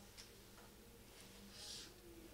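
Near silence, with one faint, short scratch of a felt-tip marker on flipchart paper near the end.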